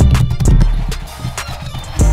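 A stone pestle knocks and grinds in a stone mortar full of a wet paste with gold leaf, about two sharp knocks half a second apart. Background music with a heavy bass beat plays under it.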